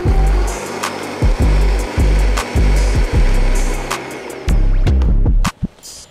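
A hip-hop beat with heavy, sliding bass hits plays over a countertop blender running, pureeing a liquid chipotle-in-adobo sauce. Both drop out suddenly about five and a half seconds in.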